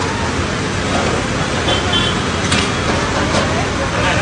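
Steady background hubbub of a busy street food stall, with faint voices and two sharp clicks about two and a half and three and a third seconds in.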